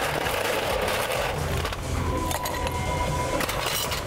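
Ice cubes clinking into a glass rocks tumbler: a dense rattle for the first couple of seconds, then scattered sharp clinks.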